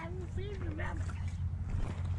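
Steady low rumble of wind buffeting the microphone, with a person's voice talking indistinctly during the first second.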